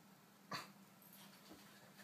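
A dog makes a single short, sharp sound about half a second in, otherwise near quiet over a faint steady hum.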